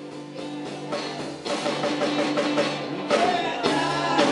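A live trio of electric guitar, electric bass and drum kit playing. The music fades in and grows louder, getting fuller and louder about three seconds in.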